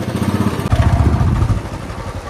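Royal Enfield single-cylinder motorcycle engine pulling away, its exhaust getting louder for about a second as the throttle opens, then easing off.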